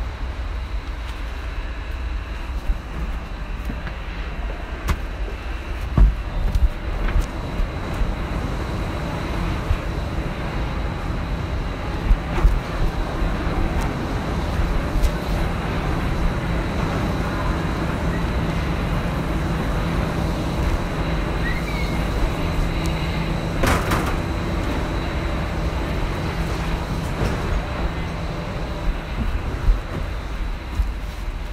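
Factory machinery running steadily: a low rumble with a thin, high, constant hum on top. Scattered sharp clanks and knocks are heard several times, loudest around a quarter and four-fifths of the way through.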